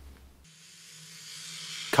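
A hissing swell over a low steady drone, from the opening sound design of an audio-drama trailer. It fades in about half a second in and grows steadily louder.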